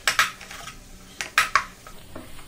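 Wooden spatula knocking against a nonstick frying pan while breaking up and mixing the bread. There are a few sharp taps: two right at the start and a quick group of three about a second and a half in.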